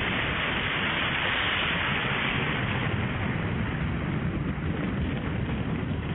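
A loud, steady rushing hiss with a low rumbling underneath, brightest at the start.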